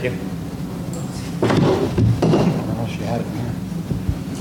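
A few short scraping and knocking noises about one and a half to two and a half seconds in, over a steady low room hum, with faint murmured voices.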